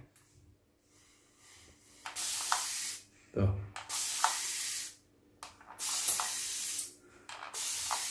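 Xiaomi plastic water spray bottle misting a mirror: four hissing sprays, each lasting a second or more from a single squeeze, starting about two seconds in.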